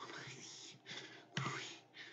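A man breathing hard in fright, a run of short, breathy gasps with the loudest and sharpest one about a second and a half in.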